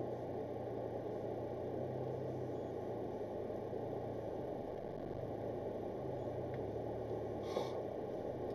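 Car engine and road noise heard from inside the cabin as the car moves slowly, a steady low hum. A single short click about seven and a half seconds in.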